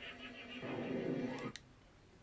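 Faint whinny-like trembling call, as from a horse, that swells and then cuts off abruptly about one and a half seconds in.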